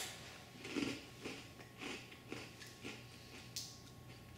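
A person biting into a sweet rice cracker and chewing it. A sharp crunch comes with the bite at the start, then faint chewing crunches about twice a second.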